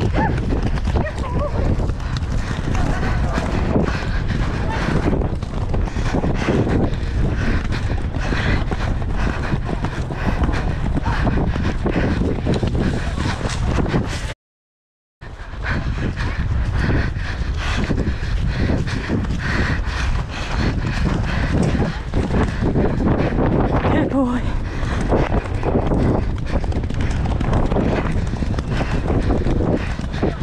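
Horses galloping on turf, hoofbeats under heavy wind buffeting the microphone. The sound cuts out completely for under a second about halfway through.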